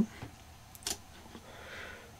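Two faint clicks from a laptop being operated, about two-thirds of a second apart, with quiet room tone between them.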